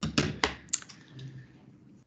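A few sharp keystroke clicks from a computer keyboard in quick succession in the first second, then fainter scattered taps, picked up by a video-call microphone.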